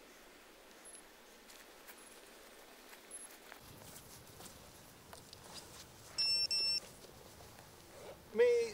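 VIFLY Finder Mini lost-model buzzer on a race quad, sounding its alarm because the flight battery is disconnected. Faint short high beeps come about once a second, then two loud beeps close by about six seconds in.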